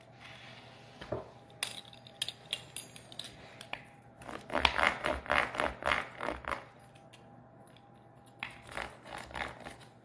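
A knife and then a wheel pizza cutter cutting a baked chicken-crust pizza in a metal pizza pan, the blade scraping against the pan. Quick clicks and scrapes, with the busiest, loudest run about four to six and a half seconds in and a shorter run near the end.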